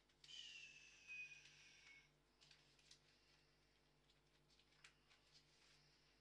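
Near silence with a faint, low hum. In the first two seconds a faint whistle-like tone falls slightly in pitch, and a few faint clicks follow.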